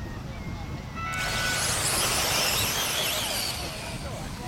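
Electric 1/10 two-wheel-drive off-road RC buggies pulling away together, a dense high electric-motor whine and hiss that sets in about a second in and eases near the end. It is preceded by a brief steady electronic tone.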